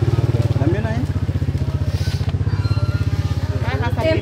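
An engine idling steadily: a low, rapid, even pulse that holds the same speed throughout.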